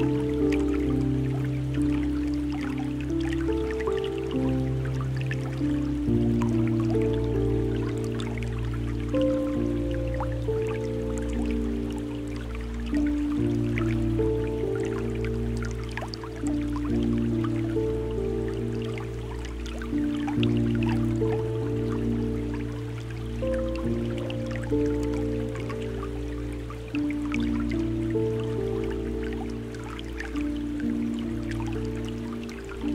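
Slow, calm ambient music of long held low notes whose bass shifts every several seconds, with scattered water drips and splashes laid over it.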